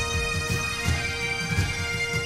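Highland bagpipes playing a dance tune over a steady drone, with the dancers' feet thudding on the wooden stage several times a second.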